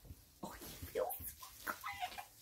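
A woman's faint, breathy little whimpers and gasps of emotion, a few short sounds between words rather than speech.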